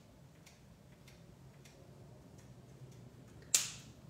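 Faint light ticks of a marker tip being flicked with its cap to spatter ink speckles, then a single sharp click near the end.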